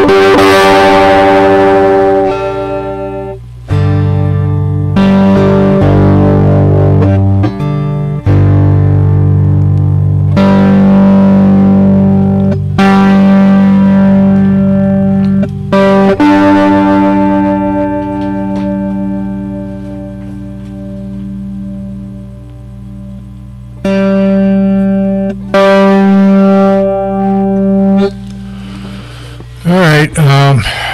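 Electric guitar played with a metal slide, sustained notes and chords changing every few seconds, with a quieter stretch past the middle where a held note rings down before the playing picks up again.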